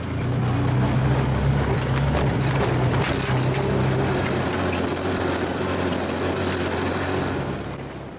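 Motorcycle engine of a tutu, a motorcycle pulling a passenger trailer, running steadily on the move with road noise, heard from among the passengers in the trailer. The sound eases off near the end.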